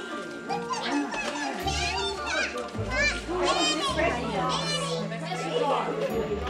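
Children's excited voices and chatter with music playing in the background, the high voices loudest in the second half.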